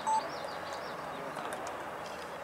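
Open-air ambience at a soccer field: a steady wash of distant voices and play, with faint bird chirps. Right at the start there is a brief, sharp, steady beep-like tone.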